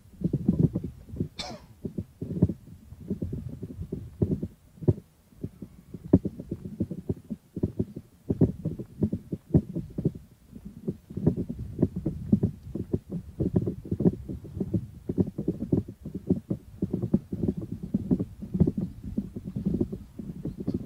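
Wind buffeting the camera microphone: an irregular low rumble in gusts that rises and falls constantly. One short higher-pitched sound comes about a second and a half in.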